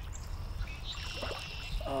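Faint water sloshing and splashing as a hooked channel catfish is played at the surface, over a steady low rumble of wind. A person's voice starts near the end.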